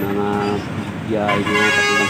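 A vehicle horn sounds in the second half, one steady blaring tone held for about half a second, over the bus's running noise.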